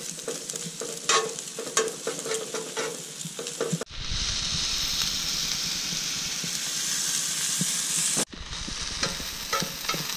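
Pulled pork frying on a Coleman camp griddle, with metal tongs clicking and scraping against the griddle as the meat is stirred. About four seconds in the clicking stops and a steady, louder sizzle takes over, and the tong clicks return near the end as sliced onions are turned.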